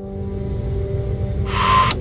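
Opening of a TV news broadcast's sound: a low rumbling drone with a steady hum under it. A short electronic burst with a beep comes about a second and a half in.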